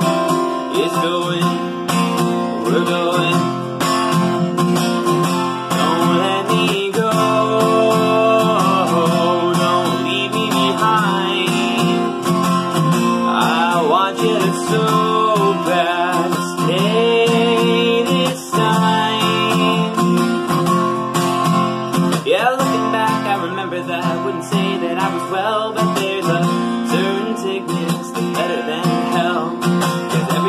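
Acoustic guitar strummed steadily while a man sings over it.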